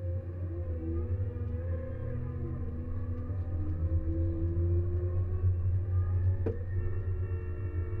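Cat K Series small wheel loader's engine and hydrostatic drive running as it travels and coasts down a grade in Hystat mode, with its aggressive engine braking. It gives a steady low drone with a whine that slowly rises in pitch through the middle, and a single click about six and a half seconds in.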